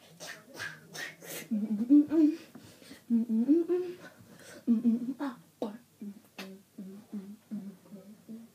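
A boy beatboxing and humming with his mouth. First come sharp hissing, clicking beat sounds. From about a second and a half in there are sliding hummed notes, and near the end short even hummed notes about three a second.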